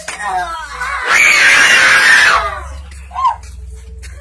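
Screaming: wavering voice cries in the first second, then a loud harsh scream lasting about a second, and a short yelp near the end.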